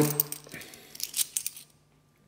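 50p coins clinking against one another in a palm as they are picked off one at a time: a run of light metallic clicks that stops shortly before the end.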